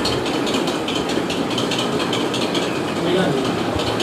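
Babble of several men's voices talking over one another, none of them clear, over a steady noisy background.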